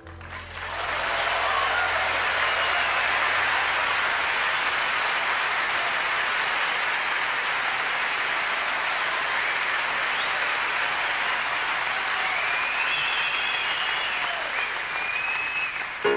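A concert audience applauding steadily, with a few whistles near the end. A low held bass note dies away in the first few seconds.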